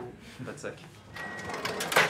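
Shop cash register being worked during a payment: clicks, a short beep just past a second in, then a louder burst of mechanical noise near the end.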